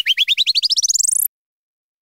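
Cartoon sound effect: a rapid run of short upward chirps, climbing steadily in pitch, that cuts off suddenly a little past a second in.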